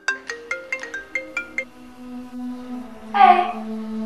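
Smartphone ringtone in a marimba style: a quick run of about eight mallet-like notes in the first second and a half, the notes left ringing, then a louder short burst about three seconds in.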